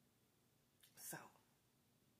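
Near silence: room tone, broken once about a second in by a single soft, breathy spoken word that falls in pitch.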